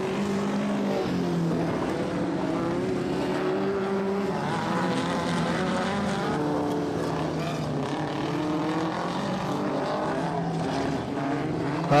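Engines of vintage speedway midgets and sprint cars lapping a dirt track, their pitch rising and falling as they run.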